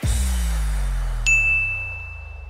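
Cartoon sound effects: a low tone that slides slowly downward, then a single bright ding a little over a second in that keeps ringing.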